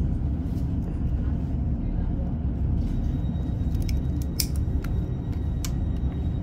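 Class 156 diesel multiple unit's underfloor diesel engine idling in the carriage while the train stands at a station, a steady low rumble, with a few sharp clicks.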